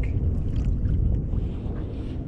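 Wind rumbling on the microphone, a steady low buffeting noise out on open, choppy water.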